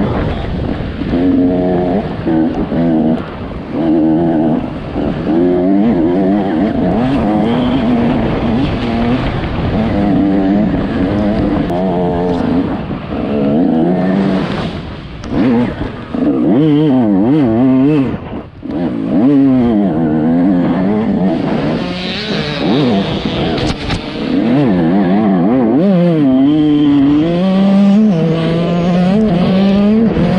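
Dirt bike engine revving hard, heard from the rider's helmet camera, its pitch repeatedly climbing and dropping as the throttle opens and closes along a trail. It falls off briefly about eighteen seconds in, then pulls steadily again.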